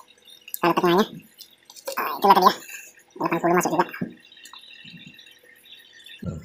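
A man's voice in three short utterances about a second apart, with no clear words; after them only faint background noise.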